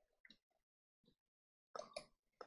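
Near silence: room tone, with a faint short sound just before the end.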